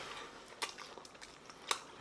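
A person chewing a mouthful of tender slow-roasted pork shoulder: quiet wet mouth sounds, with two sharp clicks, about half a second in and again near the end.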